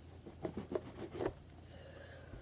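A few faint taps and rustles as a box of trading cards is handled and opened, clustered in the first second and a half, then only faint room hum.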